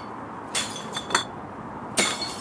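Empty glass beer bottles dropped into a bottle bank, clinking against the glass inside: three sharp clinks, each with a short ring.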